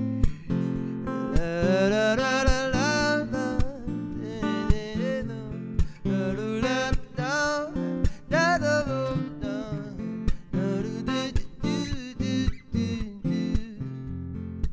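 Steel-string acoustic guitar strummed in steady chords, with a man's voice singing a slow, sliding melody over it.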